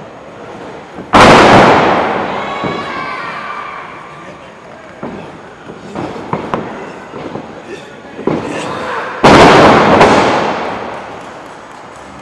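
Two loud crashes of a wrestler's body slamming onto the wrestling ring's mat and boards, about a second in and again about nine seconds in. Each is followed by the crowd's shouts dying away over a couple of seconds in the echoing gym.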